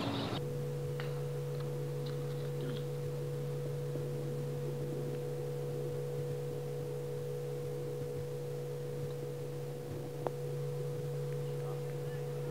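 Steady electrical hum: a low, even tone with a fainter higher tone above it, starting abruptly just after the start, with a single sharp click about ten seconds in.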